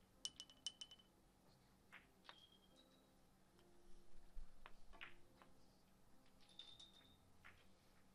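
Billiard balls and the small pins of five-pin billiards clicking and clinking on the table: a quick run of about six sharp clicks with a brief high ring in the first second, then scattered single clicks and clinks as balls and pins are handled and set back in place.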